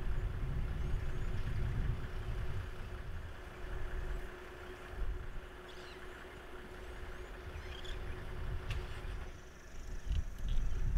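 A vehicle engine idling steadily with a low rumble and a faint constant hum, with a few faint bird chirps now and then.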